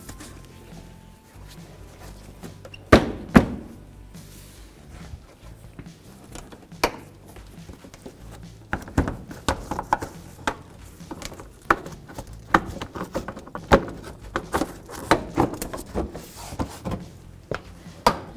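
Plastic front bumper cover of a 2003–07 Honda Accord being pushed and knocked into its tabs at the fender, making thunks and snaps. Two loud knocks come about three seconds in, then a run of quicker knocks and taps through the second half, over background music.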